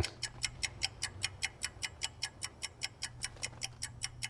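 Rapid, even clock-like ticking, about four to five ticks a second, over a faint low steady hum.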